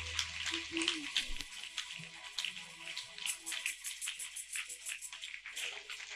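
Congregation applauding with a light patter of many claps, while music fades out in the first second and a half.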